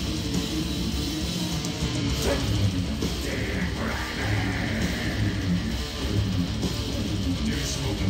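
Live black metal band playing: distorted electric guitars and bass over drums, continuous and loud, heard from the audience.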